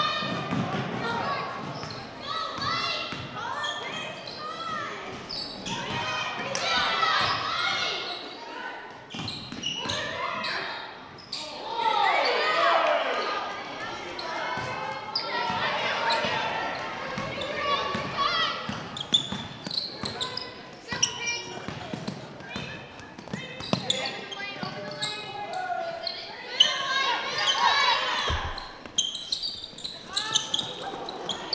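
Live basketball game sound in a large gym: a basketball bouncing on the hardwood court amid indistinct voices of players and spectators.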